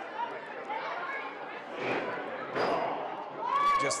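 Dull thuds of a wrestler being hit and thrown into the ring's corner turnbuckle, over crowd chatter in a large hall.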